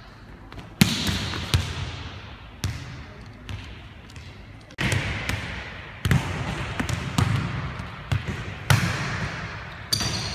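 Volleyballs being hit and bouncing on a hardwood gym floor: about ten sharp slaps at uneven intervals, each ringing out in the echo of the big gym.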